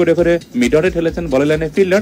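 A person's voice in short phrases, some vowels held steady for about half a second, in a sung or chanted manner.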